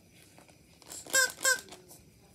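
Two short, high-pitched squeaks, about a third of a second apart.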